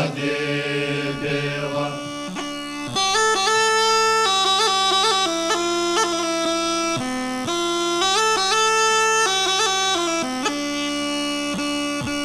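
Bulgarian gaida (bagpipe) playing an instrumental phrase over its steady drone, the melody stepping and ornamented, coming in about three seconds in as the voices of the folk song fall away.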